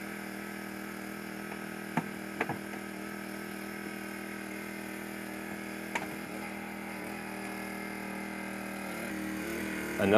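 Engine-driven hydraulic power unit for rescue tools running steadily with a hum, with a few short sharp metal cracks as the spreaders bite into the car door: two about two seconds in, half a second apart, and one more about six seconds in.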